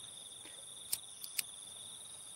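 Crickets chirring in a steady, high-pitched, continuous trill, with a few faint clicks about a second in.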